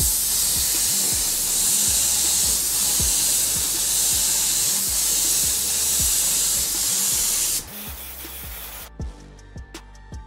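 Gravity-feed spray gun hissing steadily as it lays a light coat of thinned black basecoat. The hiss drops sharply about three-quarters of the way through, then cuts off shortly before the end.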